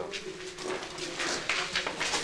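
Scattered shuffles and knocks from people and a handheld camcorder on the move, with faint murmured voices.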